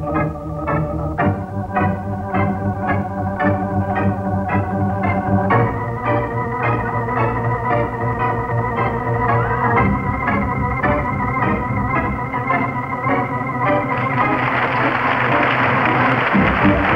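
Organ music with a steady beat, changing chords every few seconds. Near the end, applause rises over it.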